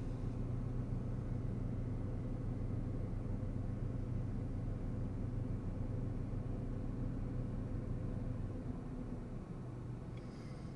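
Steady low hum of a 2015 Toyota Yaris running, heard inside its cabin. The hum drops away near the end.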